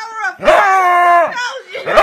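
A dog howling: a short cry, then a long howl of about a second that drops in pitch at its end, and another beginning near the end.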